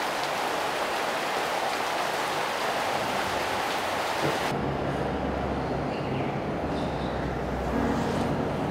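A steady, even hiss, like heavy rain, for about four and a half seconds. It cuts off abruptly and a low, steady hum takes over.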